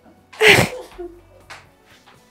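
A single short, sharp sneeze about half a second in.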